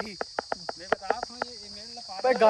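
Steady, high-pitched insect chorus, with a run of sharp clicks and rustles close to the microphone.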